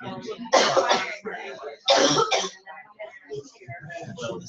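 A person coughing twice, the two coughs about a second and a half apart, the first about half a second in, louder than the talk around them.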